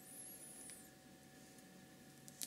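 Near silence: room tone with a faint steady hum and a very faint, brief high rustle early on.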